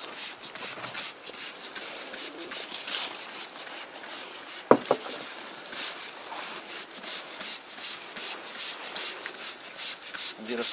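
Hand trigger spray bottle spritzing package-bee cages, a run of short hissing sprays with rubbing and handling noise. Two sharp clicks come a little before the middle.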